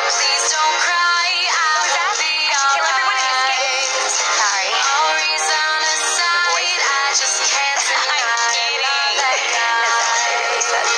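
Pop song playing, with a high, processed lead vocal over a dense backing track; it sounds thin, with almost no bass.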